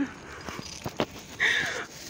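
A few light taps and knocks, then a short vocal sound from a woman about three-quarters of the way through.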